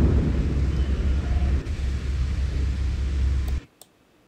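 Recorded windy-forest ambience playing back from an editing timeline: steady, deep wind noise that stops abruptly near the end when playback is halted.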